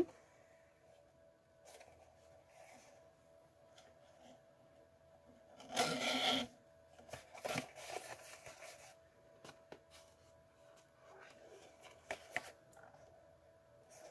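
Quiet rustling and rubbing of a cardstock pillow box and ribbon being handled as the ribbon is wrapped around the box, with one louder rustle about six seconds in and a few smaller ones later.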